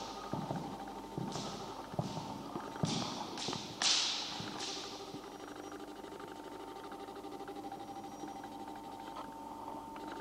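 Footsteps on a wooden hall floor, a handful of knocking and scuffing steps in the first half, the loudest about four seconds in, then quieter; a faint steady tone hums underneath.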